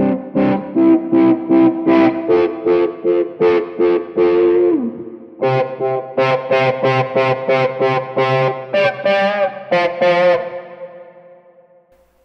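Electric guitar played through a Fractal FM3 preset with the Q-Tron-style envelope filter's envelope follower switched off, so the notes get no touch-sensitive wah sweep. Two phrases of quick picked single notes, the first ending on a note that falls in pitch about five seconds in, the second ringing out and fading near the end.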